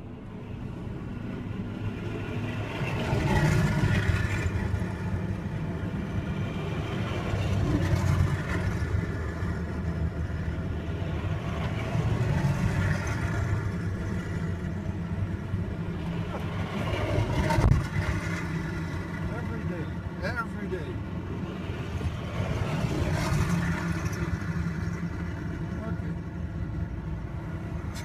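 A column of 2S1 Gvozdika tracked self-propelled howitzers driving past one after another. Their diesel engines and running gear swell and fade every few seconds as each vehicle goes by.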